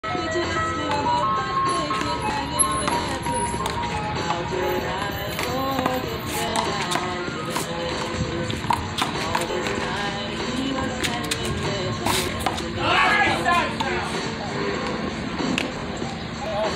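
Music playing with people's voices over it, broken by several sharp slaps of a rubber handball being struck and hitting the wall during a rally.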